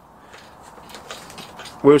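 Faint, steady handling noise from the foam tail and rudder of a model airplane being worked by hand, then a man starts speaking near the end.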